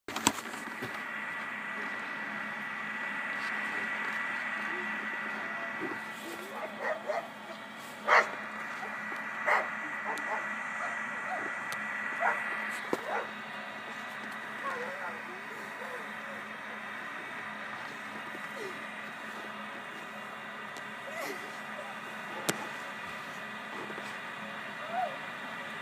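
A dog barking a few short, sharp times, loudest about eight seconds in and again a second and a half later, over a steady hiss.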